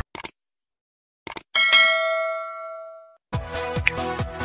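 Subscribe-button animation sound effects: two short clicks, then a single bell ding that rings out and fades over about a second and a half. Electronic music with a beat starts near the end.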